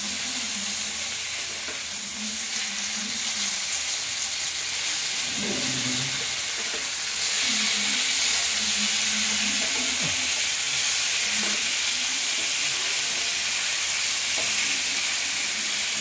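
Masala-coated fish pieces sizzling as they shallow-fry in oil in a nonstick pan, a steady hiss that grows a little louder about halfway through, while wooden spatulas turn and press the pieces.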